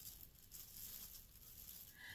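Near silence, with a faint rustle of a thin plastic shopping bag being held up.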